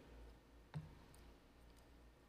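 Near silence with a low steady hum, broken by a single short click a little under a second in.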